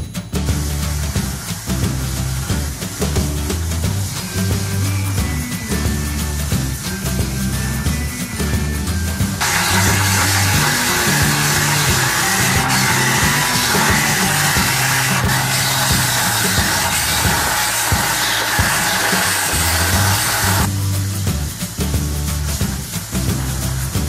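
Background music with a steady bass beat; about ten seconds in, a loud steady grinding hiss of an electric motor-driven abrasive disc sanding a coconut shell comes in over it and cuts off abruptly about ten seconds later.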